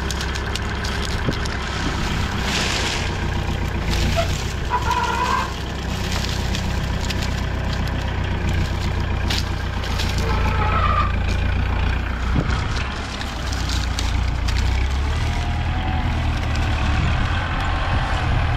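Small farm tractor's diesel engine running steadily while it works a hydraulic sugarcane grab loader, with occasional short clanks.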